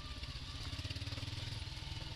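Motorcycle engine running steadily at low speed, its rapid firing pulses even and unbroken as the bike rolls slowly over a rough gravel track.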